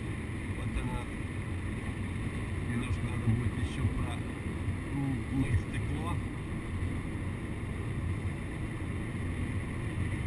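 Steady engine and road noise inside a Mercedes-Benz car's cabin at highway speed, with the windshield wipers sweeping washer fluid across the glass.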